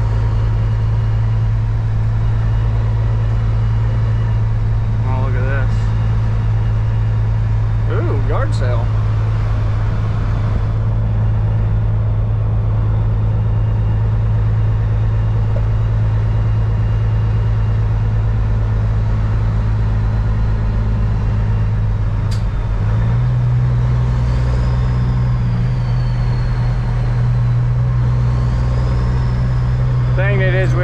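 Diesel engine of a Peterbilt semi truck heard from inside the cab, running with a steady low drone as it drives at low speed. The drone steps up in pitch a little over two-thirds of the way through as the revs rise.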